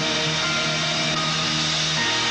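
Live band music from an old television concert recording: a loud, dense sustained chord with a hissy wash over it.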